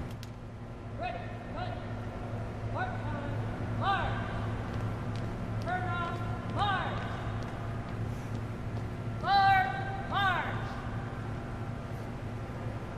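Color guard commander shouting drill commands in four pairs, each a drawn-out preparatory word and then a sharp word of execution, as the colors are retired. A steady low hum runs underneath.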